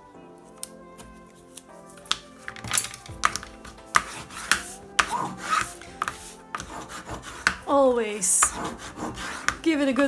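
A bone folder scraping in quick strokes over paper laid on chipboard, pressing down strips of double-sided craft tape for a firm bond. Soft background music runs underneath, alone for the first couple of seconds before the rubbing starts.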